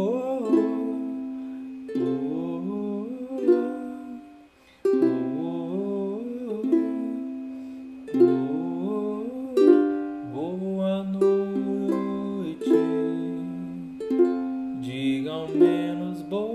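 Ukulele strummed slowly with the thumb through a C–Am–F–G7 chord sequence, one strum every second or two, with a wordless sung melody gliding over the ringing chords. The playing drops away briefly about four seconds in.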